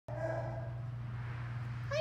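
A frightened Boxer–Plott hound mix dog gives one short, high whine near the start, over a steady low hum.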